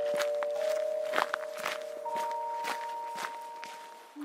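Footsteps walking away at about two steps a second, fading out, over a held music chord. A higher tone joins the chord about halfway through.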